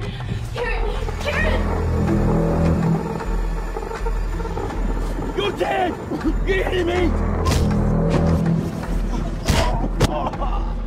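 Horror film trailer soundtrack: dark score music over a low, pulsing bass, with voices in it and two sharp hits in the last few seconds.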